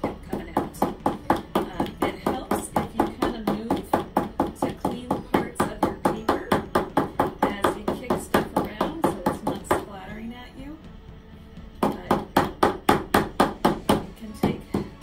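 A canvas being knocked rapidly against a paper-covered desk to spread wet pour paint, about four or five sharp taps a second. The tapping breaks off for about two seconds near the end, then starts again.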